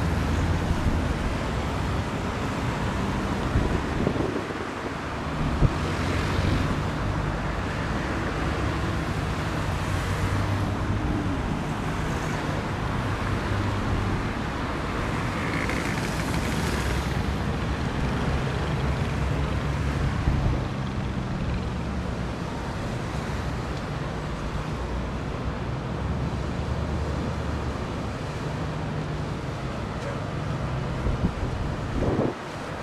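City traffic hum and wind buffeting the microphone, mixed with the low, wavering engine drone of an excursion boat turning and pulling away on the canal.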